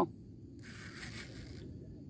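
Faint whir of a small RC servo, starting about half a second in and stopping about a second later, as it drives the wing spoiler up from flush.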